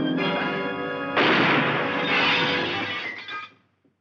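Dramatic orchestral film score on held notes, broken about a second in by a sudden loud crash that rings on for about two seconds with the music before fading out.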